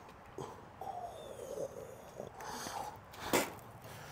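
Handling noises at a steel flat-top griddle: a few light knocks, then a sharp knock near the end, the loudest sound. A short falling whine comes about a second in.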